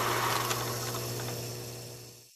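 A film-projector sound effect: a steady mechanical whir with a low hum and a few clicks, fading out near the end.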